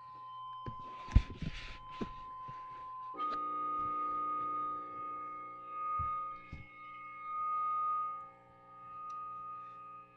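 Electronic feedback drone run through guitar effects pedals: sustained steady tones that step up in pitch about three seconds in, where more tones join, then swell and fade slowly. A few handling knocks about a second in.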